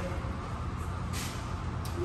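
Steady low mechanical hum, with a brief soft hiss about a second in and a faint click near the end.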